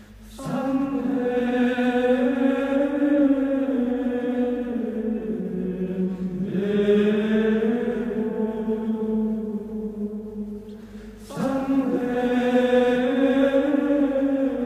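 Background music of slow vocal chant: voices holding long, drawn-out notes in long phrases, with a short break and a new phrase starting about eleven seconds in.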